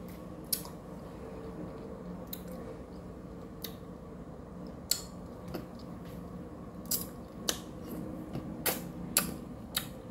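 A frozen red-bean ice candy in its thin plastic bag being handled and bitten: scattered short, crisp crackles, about nine, the loudest near the end, over a faint steady hum.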